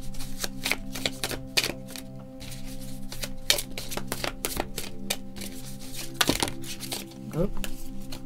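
A deck of tarot cards being shuffled by hand: a quick, irregular run of sharp card clicks and snaps, over steady background music.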